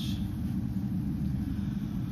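Steady low background rumble, even and unchanging, with no other event in it.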